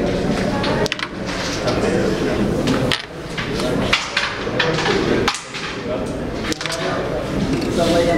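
Indistinct background talk, with a few sharp clicks as the carrom striker hits the coins on the board.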